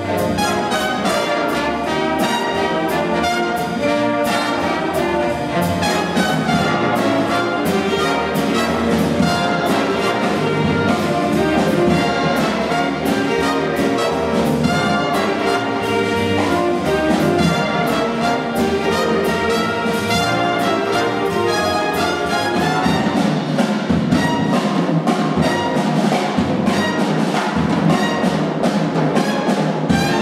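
Live jazz big band playing a twelve-bar blues: saxophones and brass over piano, upright bass and drums.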